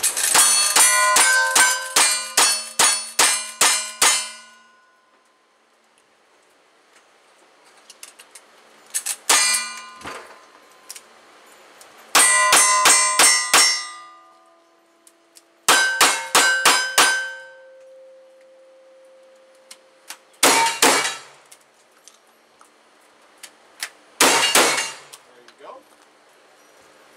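Strings of gunshots from a cowboy action shooter's guns: a fast run of about ten rifle shots, then groups of revolver shots, then heavier shotgun blasts near the end. Each shot is followed by the clang of a steel target ringing on.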